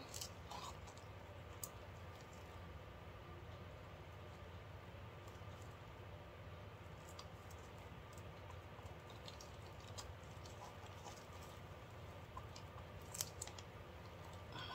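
Faint room hum with a few light, scattered clicks and taps from handling a plastic mixing cup and wooden stir stick while clear epoxy resin is poured into a silicone mold.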